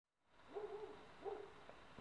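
Two faint hooting bird calls, the first longer than the second.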